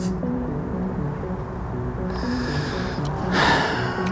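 Background music of steady held low notes, with a brief breathy rushing swell about three seconds in.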